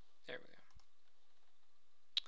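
A few faint computer mouse clicks about three quarters of a second in, just after a brief murmur of a man's voice.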